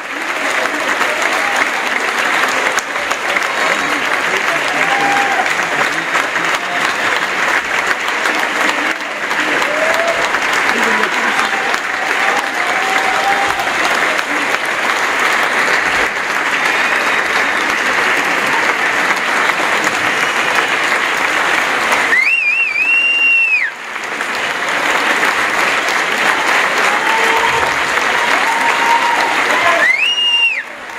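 Audience applauding steadily, with voices calling out over the clapping. A shrill whistle sounds about 22 seconds in and again at the very end.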